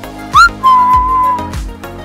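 A loud whistle: a short rising chirp, then one long held note that sags slightly, over background music with a steady beat.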